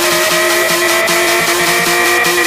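Electronic dance music from a DJ mix: sustained synth tones slowly rising in pitch over a quick, steady pulse.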